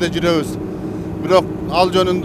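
Motorboat engine running at speed, a steady hum that continues under bits of speech.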